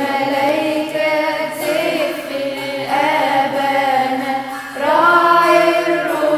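Coptic church choir of mostly young women with a few men singing an Arabic praise hymn (madeeh) together, in long sung phrases with brief dips between them.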